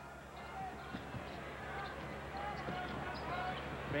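A basketball being dribbled on a hardwood court, with a few short knocks, over the steady murmur of an arena crowd.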